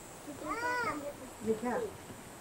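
A voice making two short, high wordless calls about a second apart, each rising and then falling in pitch.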